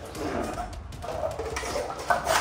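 Two people blowing hard into balloons: breathy puffs of air with a few faint, whine-like tones.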